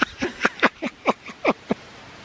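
A person laughing: a run of about eight short bursts, each dropping in pitch, dying away near the end.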